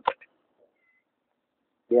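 A man's voice ending a short high-pitched syllable, then a pause of near silence for over a second before his speech resumes at the end.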